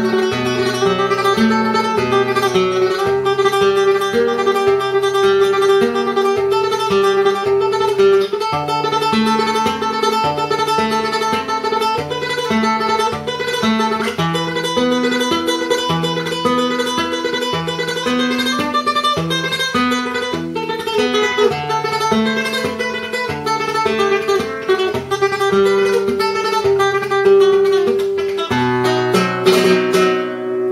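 Flamenco guitar with a capo playing a fandango natural falseta por la entirely in four-finger tremolo (index, ring, middle, index): a rapidly re-picked treble note sustained over moving bass notes. A few strummed chords close the phrase near the end.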